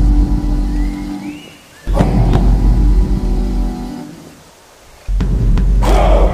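Big bass drum struck twice, about two and five seconds in, each boom ringing out over held musical tones and fading before the next. The slow, spaced beat is that of an Icelandic-style thunderclap chant.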